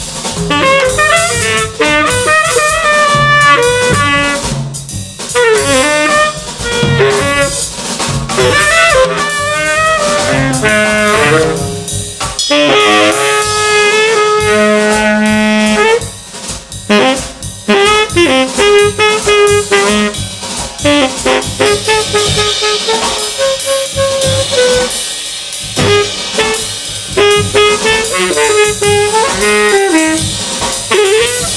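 Jazz tenor saxophone improvising over a drum kit of Gretsch drums and Paiste Formula 602 cymbals. The saxophone plays quick melodic runs with a few longer held notes near the middle, while the drums keep a busy pattern under a steady wash of cymbals.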